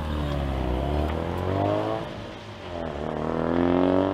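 Ford Focus RS's 2.3 EcoBoost turbocharged four-cylinder engine under acceleration as the car pulls away. The revs climb, dip once a little past halfway, then climb again.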